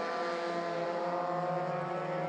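Formula single-seater racing car engine running at high revs, a steady engine note passing on track.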